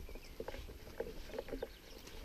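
Faint, irregular soft taps and rustles of someone walking on a grassy track with a rifle, footfalls and carried gear knocking lightly several times a second.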